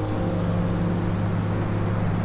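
Slow ambient music of a low sustained drone and long held tones, over the steady wash of ocean waves breaking on a beach.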